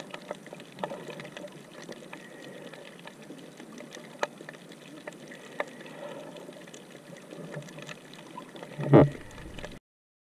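Underwater ambience picked up by a camera below the surface: a steady hiss of water noise with scattered sharp clicks and crackles, and a louder gurgling burst about nine seconds in, after which the sound briefly cuts out.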